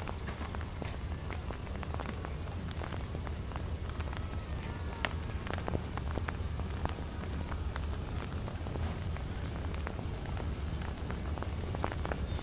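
Steady outdoor background noise: a low rumble with a light hiss and scattered small clicks.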